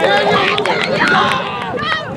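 Several voices calling and shouting over one another during play on an open field, loudest in the first second.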